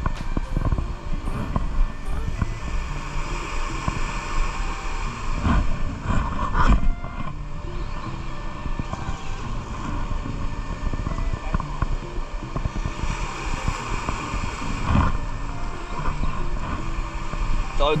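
Sea surf churning against the rocks and a steady rush of wind on the microphone.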